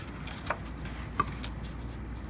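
Light handling sounds over a low steady hum: two brief taps, about half a second and just over a second in, as a thin wood veneer sheet and hand tools are moved on a wooden workbench.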